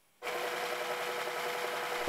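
Small DC motor of a home-built linear drive running, turning the 6 mm threaded rod through its friction gear, with the rod's free end spinning in a ball bearing. A steady running sound with one steady tone in it starts abruptly about a quarter second in.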